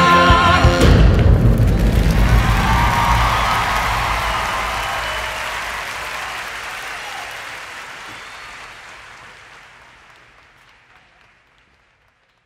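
The show's live band and singers end on a loud held chord with a heavy drum hit that cuts off about a second in. Theatre audience applause follows and fades out gradually to silence.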